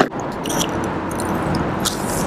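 Handling of a metal clip on a coiled lanyard: a sharp click at the start and another near the end, with small rattles between, over a steady rushing noise.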